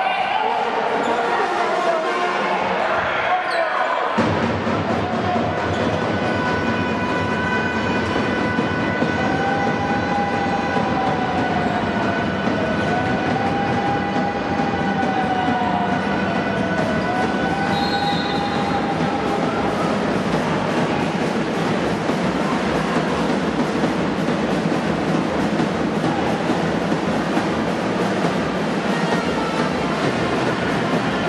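Steady, noisy din of a basketball game in a sports hall, with a ball bouncing on the court.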